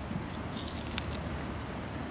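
Sugar cane being bitten and chewed: a few short crunching clicks in the first second or so, over a steady low rumble.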